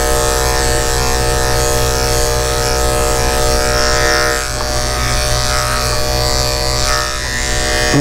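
Andis electric dog clipper running with a steady, even buzz as it is worked through a puppy's curly coat around the head, dipping slightly in level about four seconds in.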